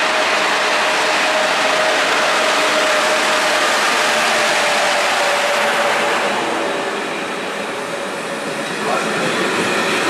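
ČD class 371 electric locomotive and its passenger coaches rolling past along a station platform, a steady electrical whine over the noise of wheels on the rails. A brief sharp sound from the wheels comes about nine seconds in.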